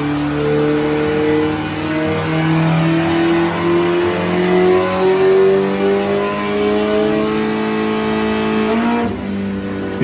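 1983 Honda CB1100F's JES-built inline-four on CR carburetors making a pull on a chassis dyno: the engine note climbs slowly and steadily in pitch for about nine seconds under load, then falls away near the end.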